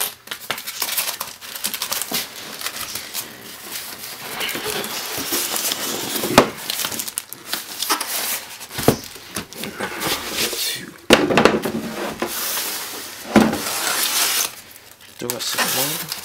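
Polystyrene foam packaging and a cardboard box being handled: rustling and scraping as the foam block is lifted out and turned over, with several sharp knocks along the way.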